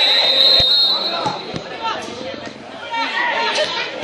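A referee's whistle blown in one long steady blast that stops about a second in, stopping play for a foul, with players' and spectators' voices calling out across the pitch. A few dull thumps sound early on.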